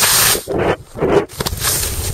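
Skis hissing and scraping over snow, with wind rushing on the camera microphone during a descent. The noise is steady at first, then breaks into uneven rushes about half a second in.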